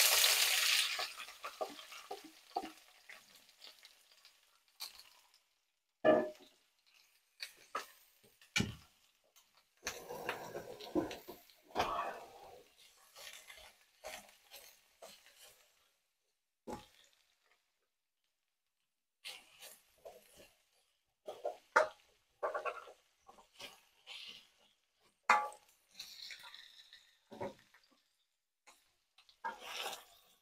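Sliced onions and bell peppers hitting hot oil in a wok, a loud sizzle that fades over the first few seconds. After that, scattered scraping and knocking as spatulas toss the vegetables in the pan, with quiet gaps between.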